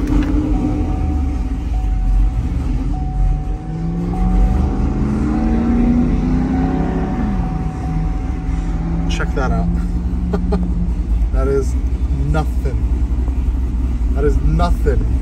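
A GMC Sierra's cammed V8 (BTR stage 4 cam) idling through a Corsa Extreme equal-length exhaust with no resonators, heard from inside the cab as a steady low rumble. A few seconds in, its pitch climbs slowly for about three seconds and then drops back suddenly.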